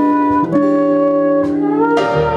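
A small jazz band playing live, the trumpet holding long melody notes over electric guitar, piano, drums and upright bass.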